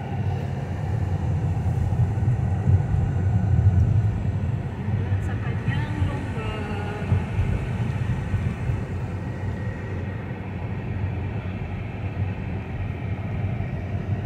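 Car cabin road noise: the steady low rumble of the engine and tyres heard from inside a moving car, a little louder a few seconds in.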